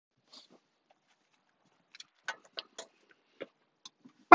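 Faint, scattered clicks and rustles, about eight of them, from a person moving about and settling into a car seat.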